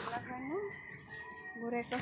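A rooster crowing: drawn-out calls with a clear pitch, one rising early on and another held steady near the end.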